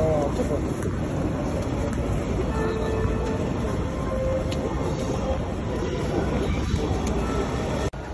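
Busy city street ambience: a steady low rumble of traffic and rail noise with indistinct voices mixed in.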